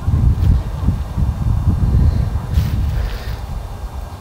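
Wind buffeting the microphone: a low, uneven rumble that rises and falls through the whole stretch.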